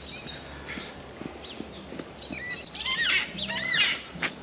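Large parrots calling as they fly over: a run of arching calls that starts about halfway through and grows louder toward the end.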